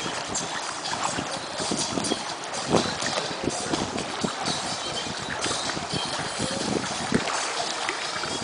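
Pool water sloshing and splashing as a small child wades through it, pushing the water with her arms, with many small irregular splashes.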